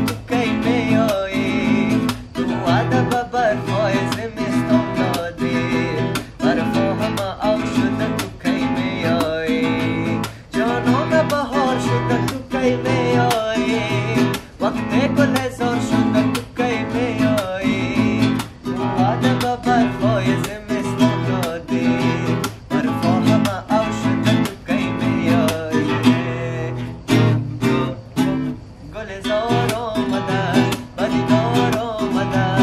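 Nylon-string classical guitar strummed in a steady, even rhythm, accompanying a song.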